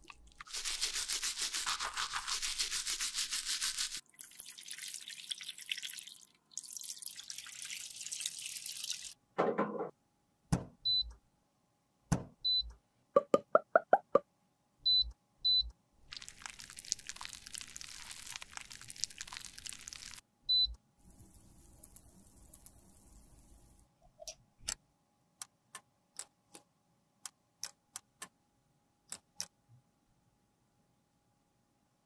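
Close-up scrubbing and brushing on a cosmetic palette with cleanser, in several long stretches, broken by short blips and a quick run of ticks. Near the end it turns into a string of sharp separate clicks and taps.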